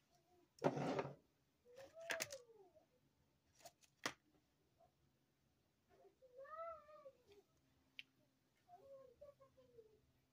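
A short loud rustle about a second in, a couple of sharp clicks, and three high-pitched calls, each rising and falling for under a second, a few seconds apart.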